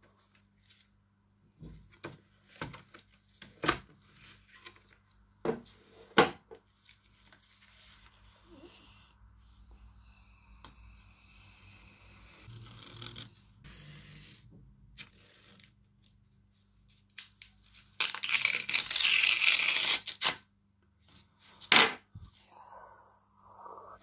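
Sharp clicks as the plastic tool case and hobby knife are handled. Then the knife blade scrapes faintly along a hardback book cover, and near the end a strip of paper is torn loudly for about two seconds.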